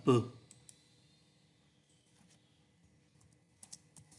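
A few faint computer keyboard keystrokes: two soft clicks just after the spoken word, then a quick pair of clicks near the end.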